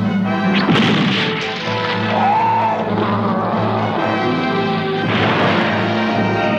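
Dramatic cartoon action music with crash sound effects: a sharp impact a little under a second in and a noisy crash near the end.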